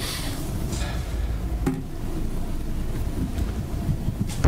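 A steady low rumble, with faint murmuring over it.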